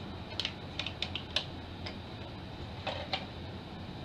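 Light, sharp clicks and taps from hands handling a packet and utensils at a stainless steel stand-mixer bowl while adding ingredients. A quick run of them comes in the first second and a half and a close pair near three seconds, over a steady low hum.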